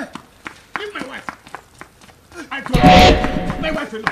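Short shouted voices and quick footfalls of people running on a dirt path. A loud burst about three seconds in lasts about a second.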